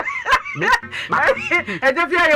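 High-pitched voice calling out in short rising-and-falling exclamations mixed with laughter, a few bursts a second.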